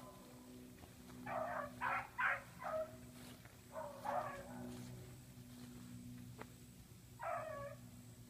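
Hunting dogs baying faintly while trailing a swamp rabbit: a quick run of about four short calls, another call about four seconds in, and one more near the end.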